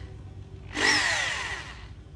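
A Makita 780 W rotary hammer drill, run free with no bit load, gives a short burst of its motor about three-quarters of a second in. It then spins down with a falling whine that fades over about a second.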